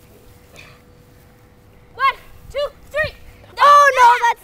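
A child laughing in short high-pitched squeals during rough-and-tumble play: quiet for about two seconds, then three quick yelps and a louder, longer squeal near the end.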